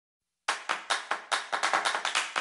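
Quick run of hand claps, about five a second, starting about half a second in after silence.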